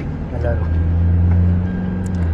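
Steady low drone of a car's engine and road noise heard inside the cabin while driving on a highway; it gets louder about a third of a second in.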